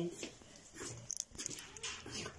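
Small black-and-tan dog whimpering briefly, a short high whine about a second in, followed by a few light clicks.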